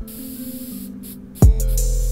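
Aerosol spray-paint can hissing in two bursts over stripped-back music. The beat drops out under the hiss until a kick drum brings it back about one and a half seconds in.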